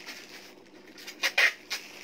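A few short, scratchy rustles of a garment being handled, bunched about a second to a second and a half in, over low room noise.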